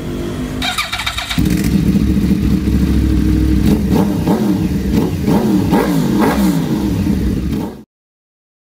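Motorcycle engine revving in repeated blips, its pitch rising and falling, loud from about a second and a half in; it cuts off abruptly near the end.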